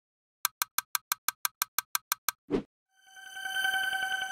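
Logo intro sound effect: a quick, even run of about a dozen clicks, a short whoosh, then a bright ringing chime that swells in the last second.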